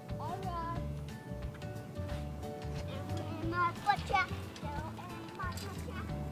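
Background music with steady held tones, and a young boy's high voice singing short swooping phrases over it, loudest about four seconds in.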